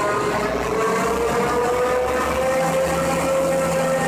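A Peterbilt semi truck's diesel engine running steadily, its pitch creeping up slightly over the first couple of seconds.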